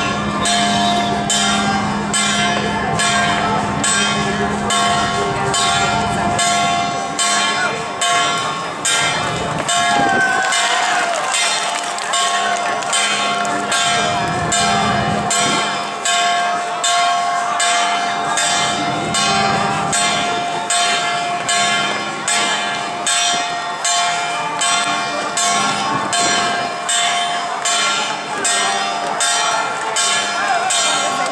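Metal percussion struck at a steady pace, about three strokes every two seconds, each stroke ringing on, over the voices of a crowd.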